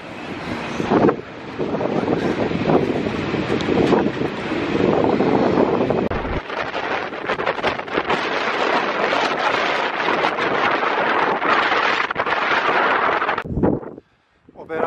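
Wind buffeting the microphone: a loud, steady rushing noise that loses some of its low rumble about six seconds in, with scattered small clicks after that.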